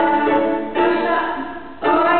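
A woman singing a song in Spanish, accompanying herself on a plucked string instrument. She holds long sung notes, with a short break near the end before the next phrase starts.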